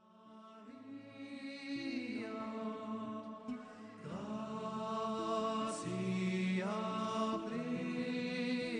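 Slow music of held, chant-like sung notes, fading in from silence over the first second or so.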